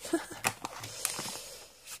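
Clear plastic packaging being opened by hand: a few sharp crackles and clicks of stiff plastic, with a brief rustle about halfway through.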